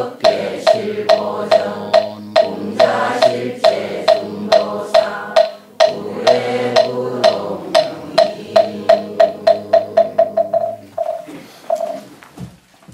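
Buddhist congregation chanting in unison to a moktak (wooden fish) struck about twice a second. From about eight seconds in the strikes speed up into a quickening roll, the chanting stops near eleven seconds, and two last strikes close it, the usual way a moktak ends a chant.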